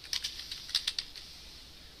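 Computer keyboard typing: a quick run of about half a dozen keystrokes in the first second, then it stops.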